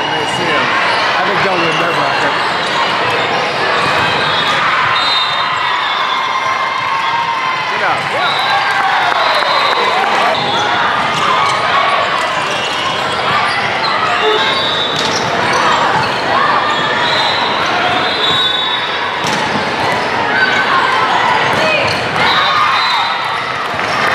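The din of a large tournament hall full of volleyball courts: many players and spectators shouting and talking at once. Through it come repeated slaps and thuds of volleyballs on hands and the hardwood floor, and short high squeaks from shoes.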